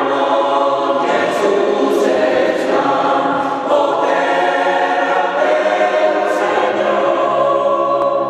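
Mixed choir of men and women singing unaccompanied in a reverberant church, holding full sustained chords that change about a second in and again about four seconds in.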